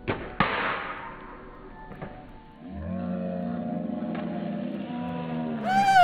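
Two dull thuds about a third of a second apart as a slingshot shot strikes a stack of soda cans, followed about halfway through by a low, steady musical drone.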